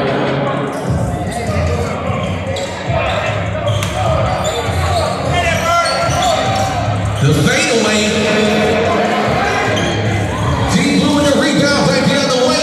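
A basketball being dribbled on a hardwood gym floor, with voices from the crowd in a large gym.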